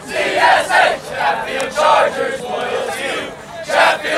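A football team of teenage boys shouting a chant in unison, a series of loud group shouts about a second apart, answering a leader.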